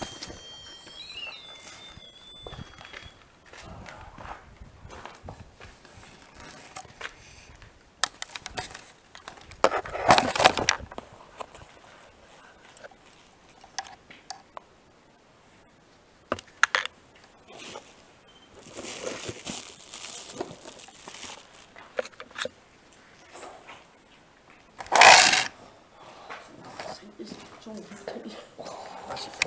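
Scattered clicks, knocks and rustles of investigation equipment being handled and packed up, over a steady high-pitched electronic whine; a loud, short burst of noise about twenty-five seconds in.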